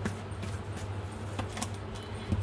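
An oracle card deck being shuffled by hand: several short flicks and taps of the cards, over a steady low hum.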